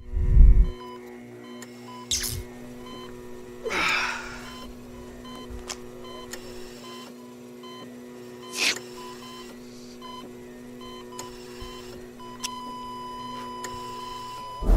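Sound-effect intro: a deep boom, then a steady electronic hum with short, intermittent beeps. Three whooshing sweeps pass through, and a continuous beep holds from about twelve seconds in.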